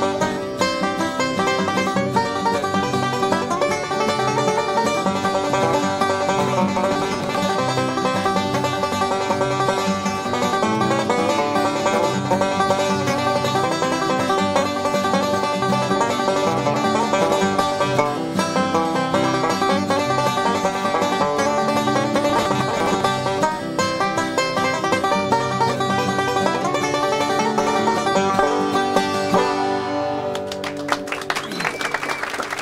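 Five-string banjo playing a bluegrass-style instrumental tune: a steady, unbroken stream of picked notes that stops right at the end.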